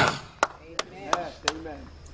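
Four sharp hits at uneven spacing, with faint voices between them.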